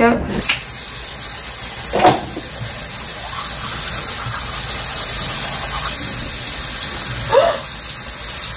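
A bathroom sink tap turned on about half a second in and left running steadily while someone brushes their teeth. Two brief sounds stand out over the water, one about two seconds in and one near the end.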